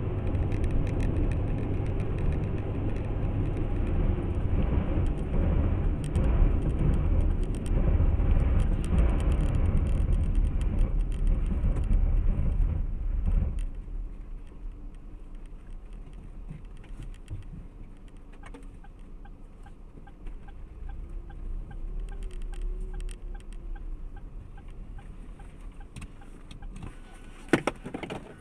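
In-car road and engine noise from a car driving on an open road. About halfway through, the noise drops sharply as the car slows to a stop. After that, a lower hum remains with a faint, even ticking, and there is a short click near the end.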